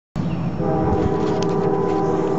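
Norfolk Southern diesel freight locomotive's air horn sounding one long, steady multi-note chord, starting about half a second in, over a low rumble from the train.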